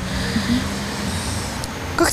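Road traffic: a motor vehicle passing on the street, a steady engine and tyre noise.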